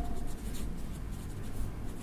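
Pen writing on paper, the tip scratching faintly in short, irregular strokes.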